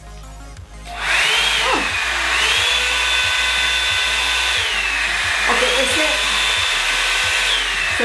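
Revlon One-Step hair dryer brush switched on about a second in: its fan motor runs with a steady rush of air and a whine that drops and climbs again several times as it is clicked between its low and high speed settings.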